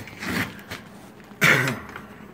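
A man coughs once, loudly, about one and a half seconds in, after a short breathy burst near the start.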